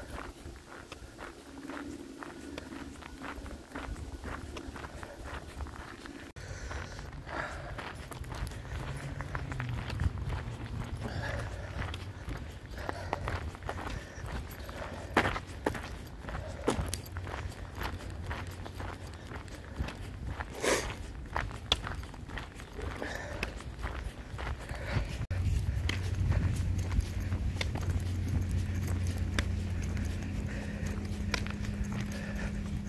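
Footsteps on a gravel path at a walking pace, a stream of short irregular crunches. A low steady hum lies underneath and grows louder in the last few seconds.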